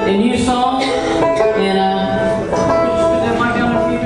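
Bluegrass band playing, with plucked strings and notes held for up to about a second.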